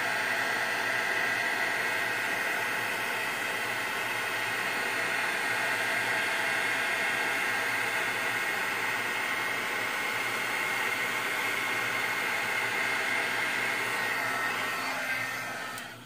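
Heat embossing gun running steadily, a fan whir with a faint hum, blowing hot air to melt embossing powder on foil paper. The sound fades out near the end.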